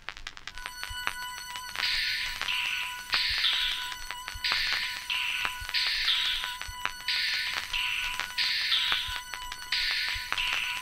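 Electronic telephone ringing as the intro of an R&B song: the rings start about two seconds in and repeat roughly every second and a third, each ring a two-part warble dropping from a higher to a lower pitch, over a faint steady high tone.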